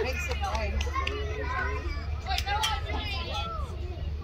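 Indistinct chatter and calls from several voices, children's among them, over a steady low rumble.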